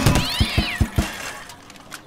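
Cartoon sound effects of a loose tyre bouncing and rolling to a stop: a run of short low thumps, about five in the first second, getting quieter. Over the first half-second a short meow-like squeal rises and falls.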